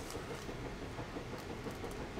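Quiet room tone: faint steady background noise with a few light ticks in the second half.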